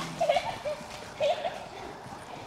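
Children's voices: three short, high-pitched wavering shouts, the last about a second and a quarter in, over a low background.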